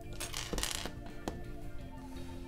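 Loose plastic LEGO bricks clicking and rattling as hands handle the pieces, with a short rattle about half a second in and a couple of light clicks after, over soft background music.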